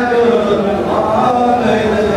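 Men's voices singing a chant-like folk song through a PA, held notes with slow bends in pitch, with bowed fiddles played along.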